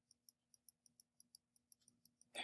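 Rapid light clicks of a computer mouse, about six a second, as a digital brush tool is dabbed over an image, over a faint steady hum.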